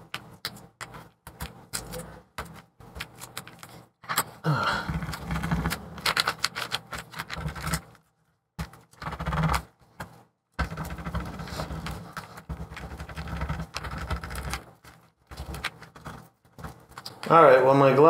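Light clicks and taps of handling on a MacBook Pro's aluminium top case, followed by stretches of rough scuffing as gloved hands rub at the leftover battery adhesive, with short pauses in between.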